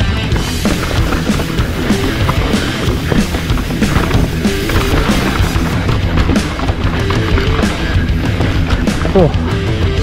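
Background music, with rolling tyre and rattle noise from a mountain bike descending a dirt trail underneath it.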